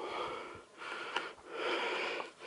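Fast, heavy breathing close to the microphone, three breaths in quick succession, with one small click just after a second in.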